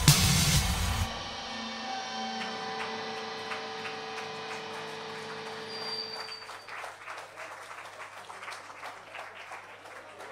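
A live pop-rock band ends a song with a final hit about a second in; the guitars and keyboard tones ring on and slowly fade out over the next five seconds, leaving faint irregular noise from the room.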